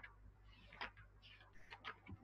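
Near silence: a low steady hum with a few faint, irregularly spaced clicks.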